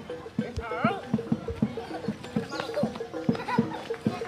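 Barongan gamelan music: even drum strokes about four a second under a held, repeated tone, with children's voices shouting over it.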